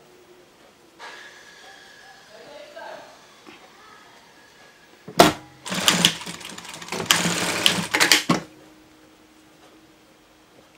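Industrial straight-stitch sewing machine stitching fabric in a few short runs of about three seconds in all, with brief stops between them. There is a sharp knock as it starts.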